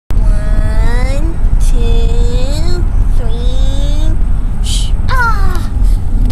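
A person's voice making long sliding vocal sounds, three rising in pitch and then one falling, with a short hiss between them. Under it runs the steady low rumble of a car's cabin on the move.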